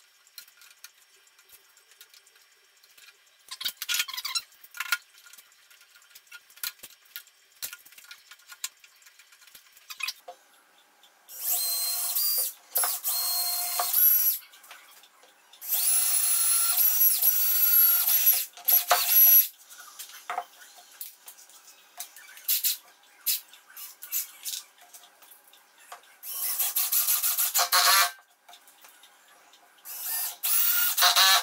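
Cordless drill-driver driving screws to fasten a router template down, in three runs of two to three seconds each with a steady motor whine. Before them come scattered clicks and knocks as clamps are set.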